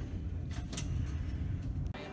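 Steady low rumble of a ship's corridor heard while walking, with a few soft knocks about half a second in; it cuts off just before the end.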